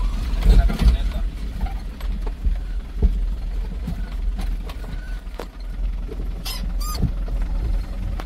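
Vehicle driving slowly over a rocky dirt road, heard from inside the cab: a steady low rumble with knocks and rattles as it jolts over stones, and two brief high squeaks near the end.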